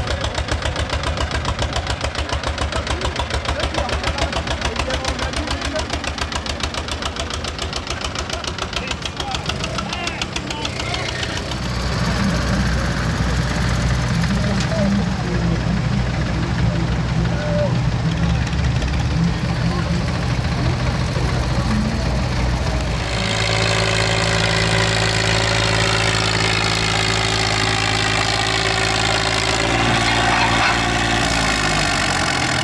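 Vintage farm tractor engines at a tractor pull. For the first ten seconds or so one engine chugs in quick, even firing pulses as it pulls a trailer loaded with standing men. A heavier, steadier engine note takes over, and near the end a tractor idles with a steady hum.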